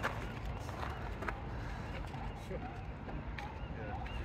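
Faint voices of people talking in the background over a low, steady outdoor rumble.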